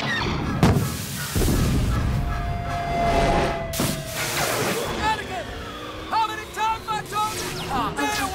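Film sound design of a speeding airspeeder: sudden whooshes as it rushes past, and a whine falling in pitch through the middle. In the last few seconds it passes through crackling electric arcs, and a man cries out in a string of short yelps.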